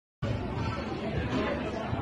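Total silence, then indistinct chatter of many voices in a large room that starts abruptly a moment in and goes on steadily.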